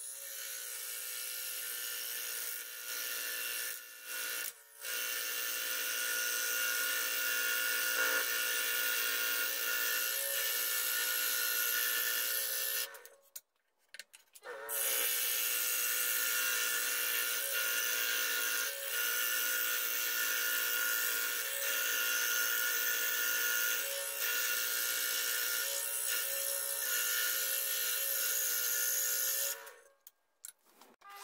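Scroll saw running and cutting lengthwise through a wooden strip: a steady motor hum under the rasp of the reciprocating blade in the wood. The sound drops out for about a second and a half near the middle, then carries on, and cuts off at the end.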